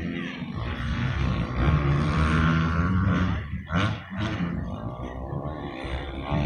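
Dirt bike engines revving hard as the bikes accelerate on a dirt track: the pitch climbs, cuts off and drops twice in quick succession past the middle as the riders shift up, then settles lower.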